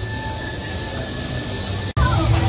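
Steady hiss of fog machines over a low rumble, with a faint high steady tone; the sound breaks off for an instant near the end.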